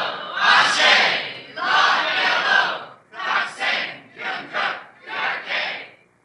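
A large crowd shouting a cry together in unison, in a string of short bursts. The first few bursts last about a second each; later ones are shorter and come more quickly.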